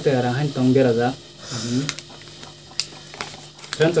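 Speech: a voice talking in two short stretches during the first two seconds, followed by quieter room sound with a few faint clicks.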